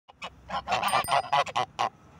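Geese honking in a rapid series of short calls, about four a second.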